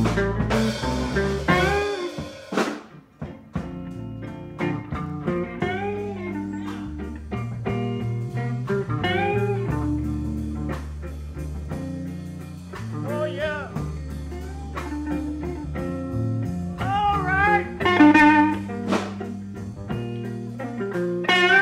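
Blues band recording in an instrumental passage: electric guitar lead with bending notes over bass and drums, with a brief drop in the band about two seconds in before it picks up again.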